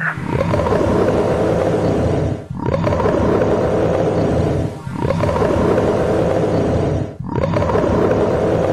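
A loud beast-roar sound effect, repeated in long stretches about every two and a half seconds, each broken off by a short gap.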